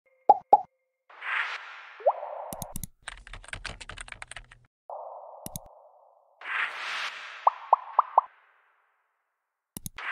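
Animated interface sound effects: two quick pops, a swish, a rapid run of keyboard-typing clicks, then more swishes, four short rising blips and a click near the end.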